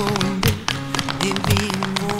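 Two pairs of tap shoes striking a wooden stage floor in a quick, uneven rhythm of sharp clicks, over acoustic guitar music.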